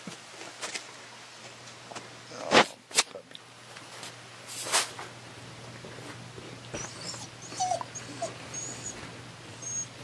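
A dog whimpering in short, high whines through the second half, with a few sharp knocks and clicks earlier on.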